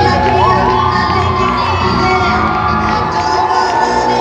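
Crowd cheering, with children's high shouts rising and falling, over 90s dance music with a steady beat.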